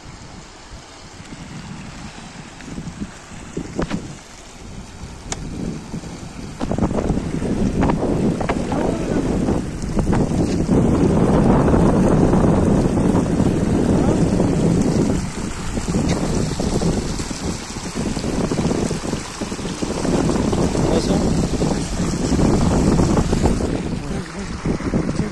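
Wind buffeting the microphone in gusts, a low rumble that gets much louder about seven seconds in, over the running water of a fast river.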